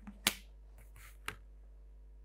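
Plastic drawing instruments being handled and set down on a drawing board: a sharp click about a quarter second in, a soft rustle, then a second, lighter click a little after one second.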